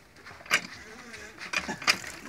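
Two sharp knocks about a second and a half apart as a hand-operated tube-well pump is handled, before any water is pumped.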